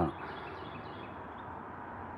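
Steady outdoor background noise, with faint bird chirps.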